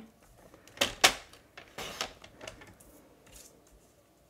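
Sliding-blade paper trimmer cutting a strip of specialty paper: sharp clicks of the blade carriage about a second in, a short scraping cut along the track, then lighter clicks and paper handling.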